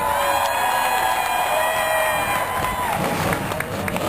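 A voice over a stadium public-address system holds one long drawn-out note for about three seconds, falling off at the end, then the grandstand crowd cheers.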